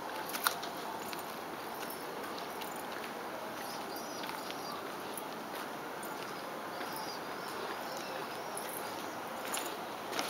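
Faint, high, short chirps of young birds calling, over a steady background hiss.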